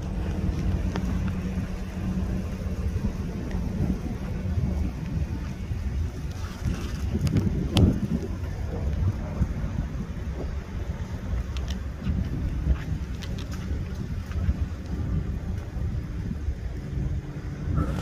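Steady low outdoor rumble, like wind on the phone's microphone, over a faint low hum, with a few light clicks and one sharp thump about eight seconds in.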